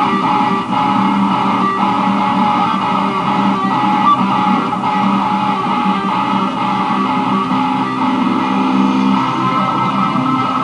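A home-recorded guitar cover played back from a laptop in Audacity. It was recorded by running an aux cable from the headphone socket into the microphone input, which is why it sounds crappy.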